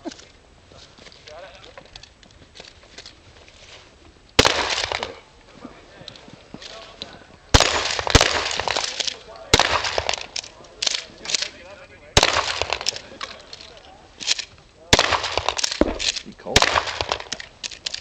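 Pump-action shotgun firing a string of about eight shots at targets, one to three seconds apart, each shot trailing off in an echo. The first shot comes about four seconds in.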